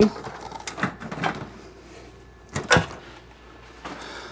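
A few light knocks and clatter of objects being handled and moved, with one sharper clack about two and a half seconds in.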